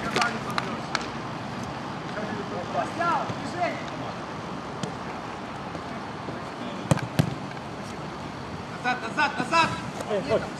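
Players' distant shouts on a mini-football pitch, with two sharp thuds of the ball being struck in quick succession about seven seconds in. More shouting rises near the end.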